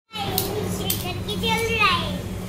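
A young boy's voice, ending in a falling exclamation, over a steady low hum.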